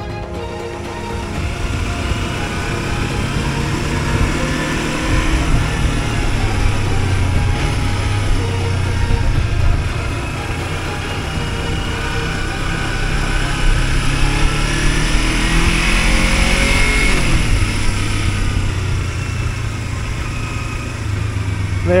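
Kawasaki Versys-X 300 motorcycle's parallel-twin engine running as it is ridden along a gravel road, its revs rising and falling.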